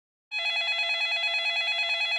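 Electronic telephone ring: a steady warbling tone with a fast regular flutter, starting a moment in.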